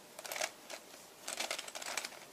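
Plastic 3x3x3 Mix-Up Plus puzzle cube being turned by hand: quick clicks and rattles of its layers as they are twisted, a brief run near the start and a longer one from about halfway on.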